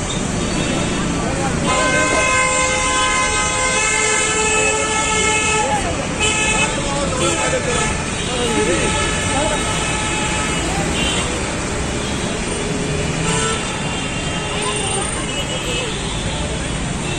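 Vehicle horns honking in busy road traffic: one long steady horn held for about four seconds starting about two seconds in, then shorter honks, over continuous traffic noise.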